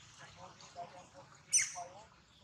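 A macaque's short, high-pitched squeak about one and a half seconds in, falling steeply in pitch. It is the loudest sound here.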